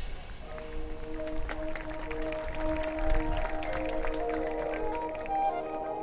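High school marching band playing a soft passage: held chords that move slowly from note to note and climb higher near the end, with short taps scattered through it.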